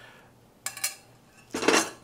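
Metal spoon clinking twice against a stainless-steel skillet as the last of the sauce is scraped out, then a louder clatter about a second and a half in as the skillet is set down.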